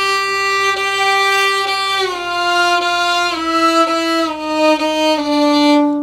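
Violin playing slow, sustained octave double stops, the lower note leading and the top note kept softer, stepping down one note at a time through five held notes. This is slow intonation practice for the octave shifts, tuning each octave on its lower note.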